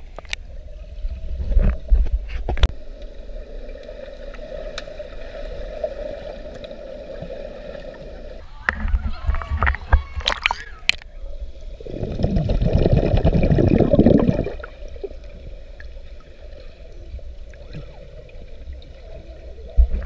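Swimming-pool water heard through a camera's waterproof housing: muffled sloshing and gurgling, with several sharp knocks. About twelve seconds in, a loud rush of churning water lasts about two seconds.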